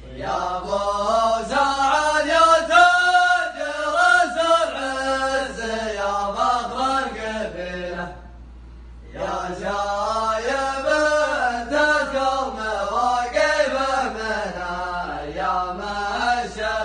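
A group of men chanting a zamil, the Arabian tribal chant sung in unison, in two long drawn-out phrases with a break of about a second about halfway through.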